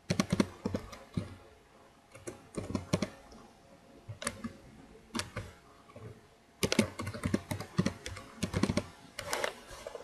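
Typing on a computer keyboard in short bursts of keystrokes with pauses between them, the longest run coming about two-thirds of the way through.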